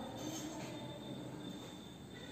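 Marker pen writing on a whiteboard: a few faint strokes with a thin, steady high-pitched squeak.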